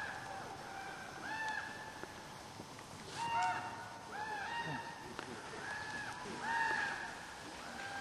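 A bird calling over and over, about eight short arched notes roughly a second apart, the loudest a little after three seconds in and again near the end.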